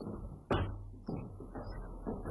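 A sharp knock about half a second in, then a softer knock about a second in, over low room noise.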